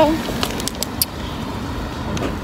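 Steady outdoor road traffic noise, with a few short light clicks in the first second.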